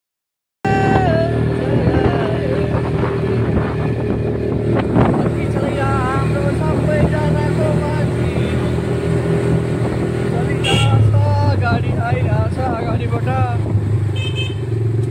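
Quad bike (ATV) engine running steadily while riding, its note changing about three-quarters of the way in, with voices over it.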